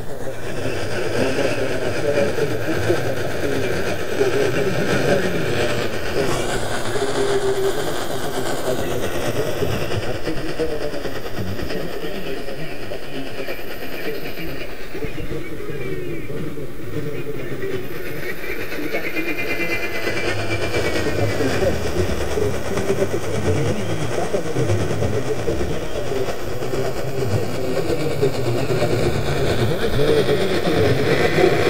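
GE Superadio AM receiver tuned to 1700 kHz, playing a weak long-distance station (KVNS, Brownsville, Texas): faint talk buried in steady static and hiss, with whistling tones that slide up and down.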